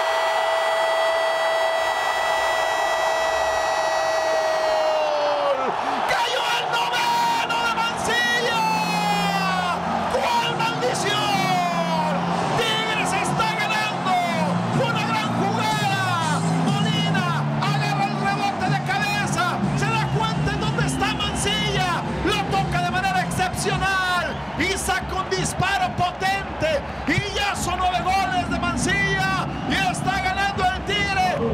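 Football commentator's drawn-out goal call: one long held 'Gooool' for about five and a half seconds that falls off at the end. It is followed by excited, rapid shouting over music.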